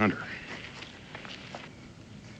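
A few faint, soft footsteps on bare ground, right after a man's last spoken word.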